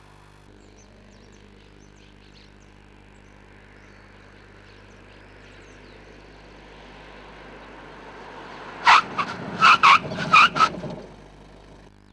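Ford EcoSport SE TDCi diesel SUV approaching along a road, its engine and tyre noise growing slowly louder as it nears. Near the end, five or six short, loud animal calls come in quick succession over about two seconds, louder than the car.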